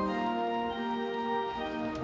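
Church organ playing sustained chords, its notes moving every half second or so: the introduction to the hymn that follows the Creed.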